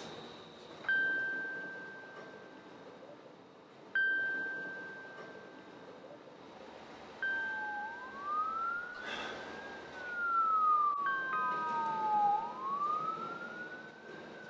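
Sparse chime notes ring out about every three seconds, each dying away. From about halfway, a police siren wails, rising and falling slowly and getting louder toward the end, with a brief rush of noise as it first peaks.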